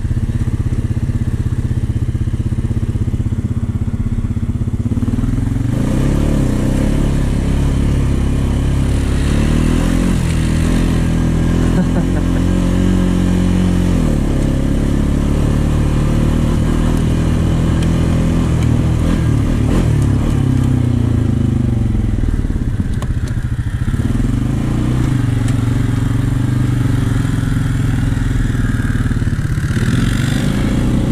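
2014 Honda Rancher 420 ATV's single-cylinder four-stroke engine running under throttle. Its pitch rises a few seconds in, falls back about midway, and rises again near the end.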